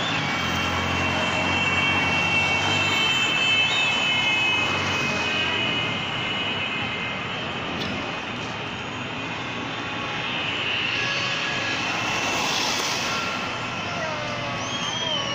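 Vehicle in motion on a highway: steady engine, road and wind noise, with a low hum at first and a few faint, long high tones held above it.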